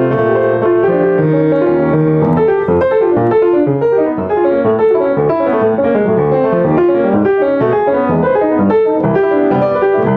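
Upright acoustic piano played solo in a jazz style: a rapid, unbroken stream of right-hand melody notes over left-hand chords.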